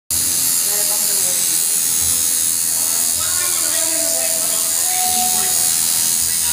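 Electric tattoo machine buzzing steadily as the needle works into the skin.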